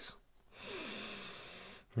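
A man breathing out, one long breathy exhale of about a second and a half that starts about half a second in.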